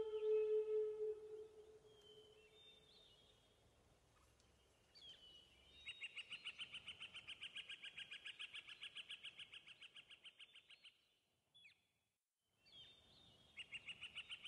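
A singing bowl's tone dies away, then a bird calls: a short chirp, then a rapid trill of evenly repeated high notes, about seven a second, lasting about five seconds. After a brief silence another trill starts near the end.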